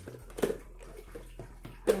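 One short, soft knock about half a second in, then quiet room tone with a few faint small ticks, until a woman's voice starts at the very end.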